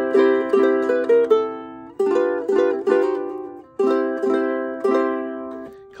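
Enya EUC-K5 solid acacia concert ukulele with fluorocarbon high-G strings being played: three short phrases of plucked chords and notes that ring and decay, with brief breaks about two seconds in and just before four seconds.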